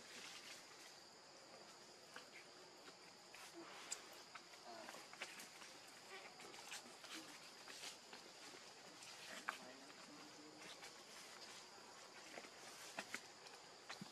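Faint outdoor ambience: a steady high-pitched insect drone, scattered soft clicks and faint distant voices.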